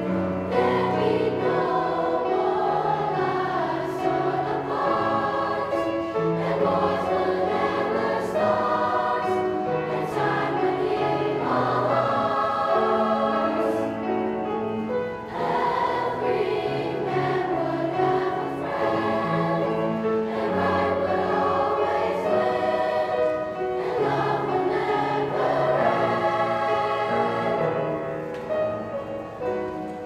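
Children's choir singing a sustained, flowing song in parts.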